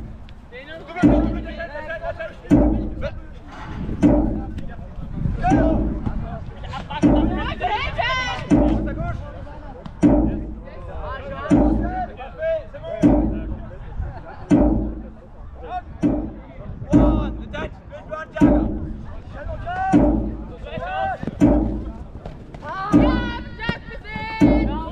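Jugger timekeeping drum, one heavy beat every second and a half, counting the stones of play. Players' shouts rise over it about a third of the way in and again near the end.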